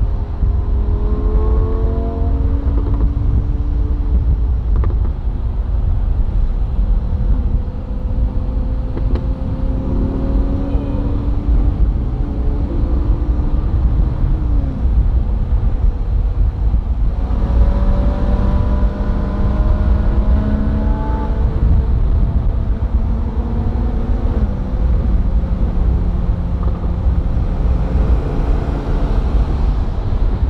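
Ferrari 458 Spider's naturally aspirated V8 under way with the roof down: the engine note climbs and drops back several times as it shifts up, over a steady low rumble of road and wind noise.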